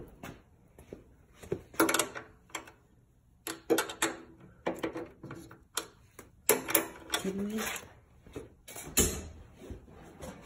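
Irregular clicks, knocks and clatter of tools and parts being handled, with a person sighing about two seconds in.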